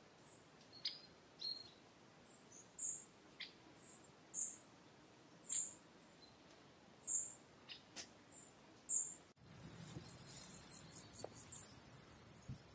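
A songbird giving short, high calls over and over, about one every second and a half. A little after nine seconds in the sound cuts abruptly to a busier, rapid high chatter with a low rumble beneath.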